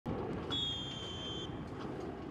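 A whistle blown once on a training pitch: one steady, high, slightly falling tone lasting about a second, over a steady low rumble of outdoor background noise.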